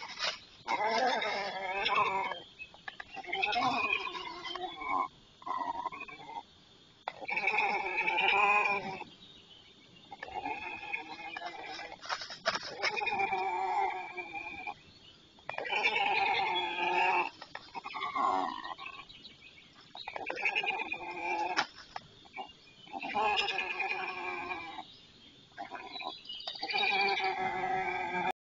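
A downy white stork chick calling over and over: about ten drawn-out calls, each lasting a second or two, with short pauses between.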